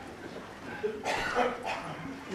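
Quiet room tone, then a person's voice, faint and off-microphone, saying a few short murmured sounds from about halfway through.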